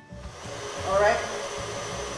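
KitchenAid Heavy Duty stand mixer running steadily with its wire whisk, whipping cream. The steady motor noise with a faint high whine sets in just after a brief gap at the start.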